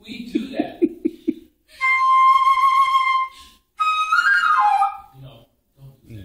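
Concert flute playing a single clear note held for about a second and a half. After a short gap comes a brief phrase that steps down in pitch.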